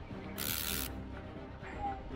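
Background music with a steady tune, and a brief hissing burst about half a second in.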